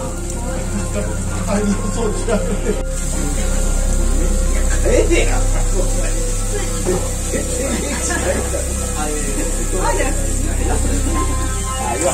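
Background music with sustained synthesizer tones, with indistinct voices mixed in.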